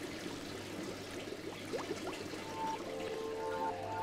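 Bubbling, trickling water, with short quick gurgles, and soft music notes coming in about halfway through.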